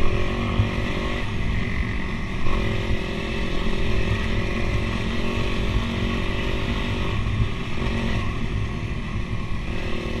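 Dirt bike engine running under way, its pitch stepping up and down several times as the throttle and gears change, over a steady low rumble.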